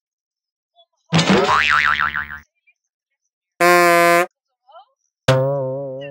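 Edited-in cartoon sound effects: a loud wobbling boing about a second in, a short flat buzzing tone near the four-second mark, then a twanging plucked note that fades away slowly.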